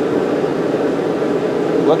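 Propane forge burner burning with a steady rushing noise while its air supply is turned down slightly to tune the air-fuel mixture toward an even, stable flame. A spoken word comes at the very end.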